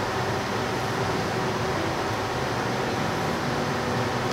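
Steady room noise: a continuous even hiss with a faint hum, of the kind an air conditioner or fan makes, with no distinct events.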